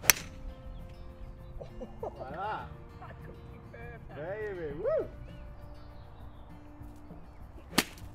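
A golf club strikes a ball with a sharp crack right at the start, and a second golf shot is struck the same way near the end.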